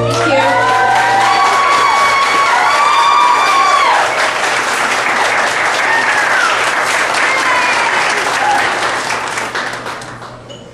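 Audience applauding, with whoops and cheers over the first four seconds; the applause thins out near the end.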